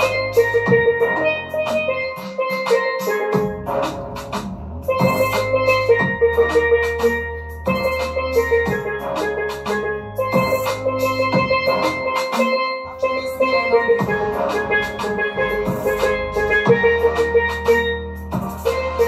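Steelpan playing a dancehall melody in quick struck notes, over a backing track with drums and a deep bass line.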